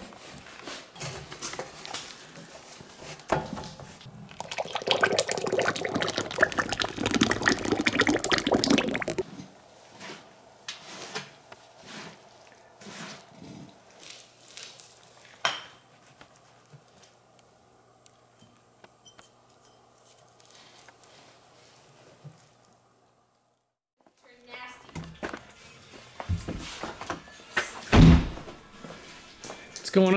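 Glass wine bottles knocking together as they are laid into a damp clay and wood-chip mix, with wet handling noise and scattered knocks and thuds.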